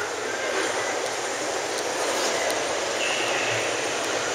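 Steady, even hiss of background noise in a large exhibition hall, like air handling, with a brief faint high tone about three seconds in.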